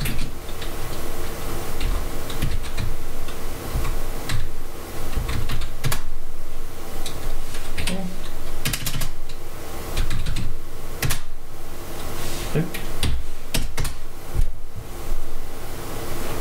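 Typing on a computer keyboard, keystrokes clicking in irregular runs with short pauses between them as commands are entered.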